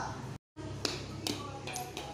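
A child's voice breaks off and the sound cuts out for a moment. Then come a few faint scattered taps over a steady low hum.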